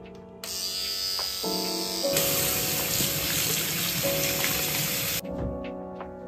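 Water running from a bathroom faucet: a steady hiss that starts about half a second in, grows stronger about two seconds in and cuts off sharply about five seconds in, over background music.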